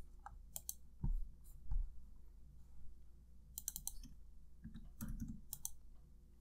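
Faint computer keyboard keystrokes and mouse clicks, in small clusters of sharp clicks, with two soft low thumps about a second in.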